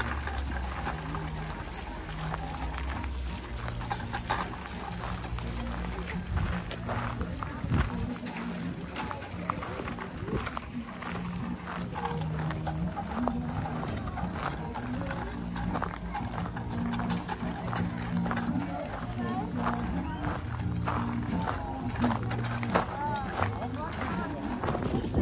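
Fairground music from children's rides playing, its bass notes moving in steps, with voices of people around and footsteps on a gravel path.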